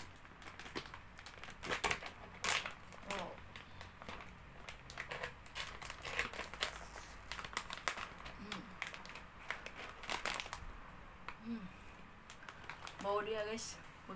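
Shiny foil potato-chip bag crinkling and crackling in irregular bursts as hands work it open, the loudest crinkles about two seconds in and again near ten seconds.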